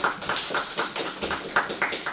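A small group of people applauding, the separate hand claps heard clearly.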